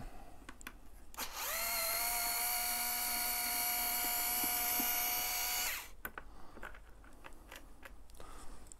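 Small electric screwdriver running to undo a large bolt under a motorcycle's rear cowl: a steady whine that spins up about a second in, holds for about four seconds, then stops. Faint clicks of handling come before and after.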